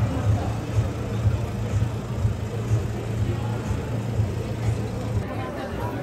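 Busy city street ambience: passers-by talking and traffic running, with background music laid over it.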